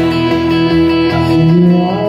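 An acoustic guitar and an electric guitar playing together through a live PA, with held, ringing chords in the instrumental opening of a song before the vocals enter.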